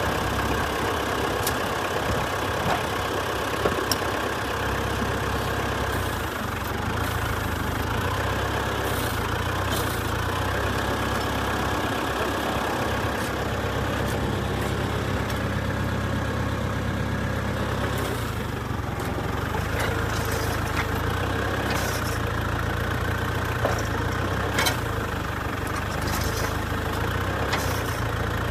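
Tractor engine running steadily, driving a Pequea HR5 rotary rake's tine rotor through its PTO shaft, with a few light clicks.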